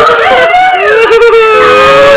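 High wailing voice holding long notes that bend up and down, with a slight waver, in a live band performance.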